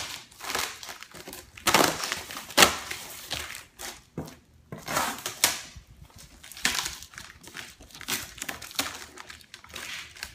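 Packing tape and cardboard being pulled and ripped off the top of a shipping box, in short irregular tearing and crinkling bursts, the loudest about two to three seconds in.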